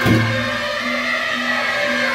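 Beiguan processional music: suona reed horns playing a melody of held notes that step from pitch to pitch, with a low percussion strike right at the start.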